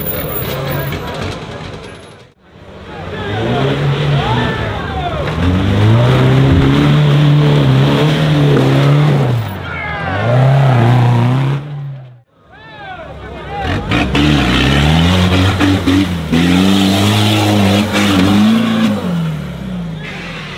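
Off-road 4x4 engines revving hard under load in a mud pit, the pitch rising and falling again and again. The sound cuts out sharply about two seconds in and again about halfway, then the revving resumes.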